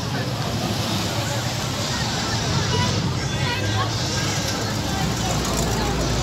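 Classic American cars running as they drive slowly past, a low engine sound under crowd chatter. A C3 Corvette's V8 grows louder near the end as it approaches.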